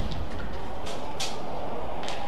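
A sharp crack of a badminton racket hitting the shuttlecock right at the start, then steady crowd noise in the arena, with a couple of faint short sounds about a second in.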